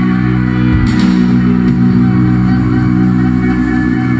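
Live rock band playing through a concert PA: electric guitars and bass guitar holding steady low notes, loud and continuous.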